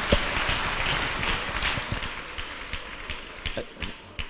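Congregation clapping: a dense patter of many hands that gradually dies away to a few scattered claps.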